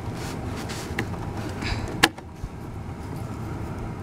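Plastic headlight assembly being handled and its bulb socket twisted loose at the back of the housing, with light scrapes and one sharp click about halfway through, over a steady low background rumble.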